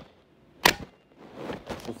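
A single sharp metallic click a little over half a second in, followed by softer handling clatter, as the receiver of a GHK AKS-74U gas-blowback airsoft rifle is closed up.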